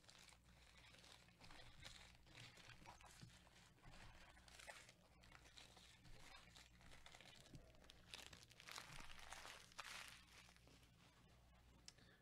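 Near silence: faint, intermittent rustling and crinkling over a steady low hum.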